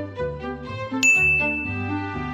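Background music with a bass line; about a second in, a single bright bell-like ding rings out sharply and fades over the following second.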